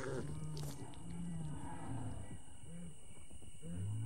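A series of short, low, moo-like calls from the Torosaurus herd, rendered through the documentary's sound design.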